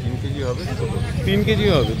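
Talking voices over a steady low rumble.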